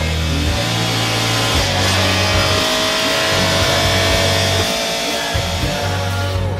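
Hard rock music with distorted electric guitar and a heavy bass line, with a racing car's engine blended in faintly beneath it.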